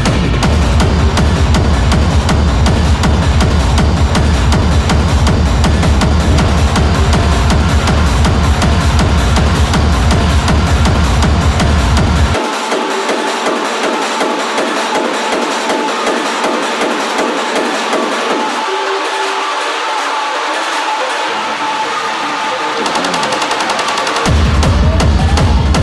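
Hard techno in a continuous DJ mix, a fast driving beat with heavy bass. About halfway through the bass drops out sharply, leaving the upper layers and a steady high tone. Near the end a rising sweep builds before the bass comes back in.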